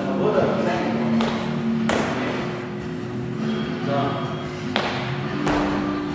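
Three sharp thuds, about a second in, two seconds in and near the five-second mark, over steady background music.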